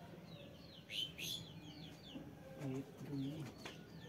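Small birds chirping repeatedly in short, high, sliding calls, the loudest burst of chirps about a second in. A low voice, either a man speaking or a dove cooing, comes in near the end.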